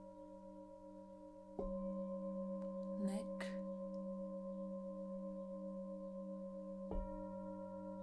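Singing bowls ringing in long, steady, overlapping tones with a slow wavering beat. A bowl is struck afresh about one and a half seconds in and again near seven seconds, each strike swelling the ring. There is a brief soft rustle about three seconds in.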